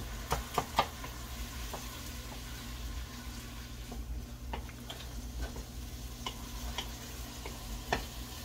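Wooden spatula scraping and tapping against a frying pan as rice and vegetables are stirred over a steady sizzle of frying. A few sharp taps come close together in the first second, and lighter scattered taps follow in the second half.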